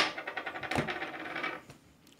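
Toy 1:14-scale RC car switched on: a click, then a rapid buzzing rattle from its electronics that fades away after about a second and a half.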